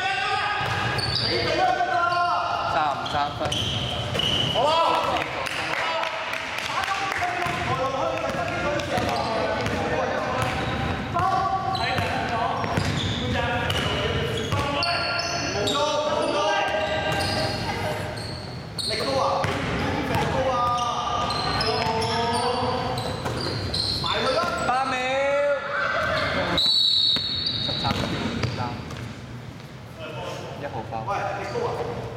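Indoor basketball game: a basketball bouncing on a hardwood court, with players calling out to each other, echoing in a large sports hall.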